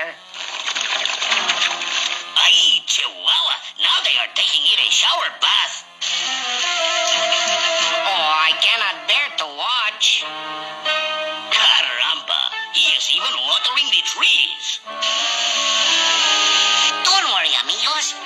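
Cartoon soundtrack: orchestral background music with held notes, mixed with short bursts of character voices and vocal noises.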